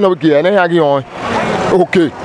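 A man speaking for about the first second, then a motor vehicle passing close by: a rush of engine and tyre noise that swells and holds, partly covering the talk.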